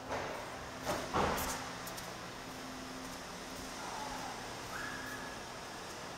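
Quiet indoor room tone with a steady low hum, and a couple of brief rustling handling noises about a second in.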